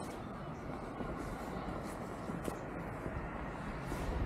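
Steady, quiet outdoor background rumble with a couple of faint ticks.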